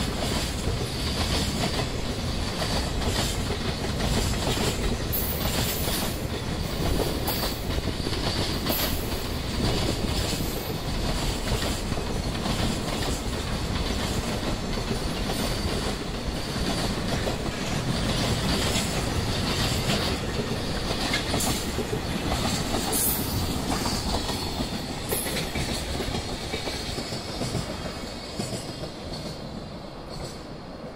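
Long container freight train rolling past, its wagon wheels clicking over the rail joints in a steady run. It fades off over the last few seconds as the tail passes.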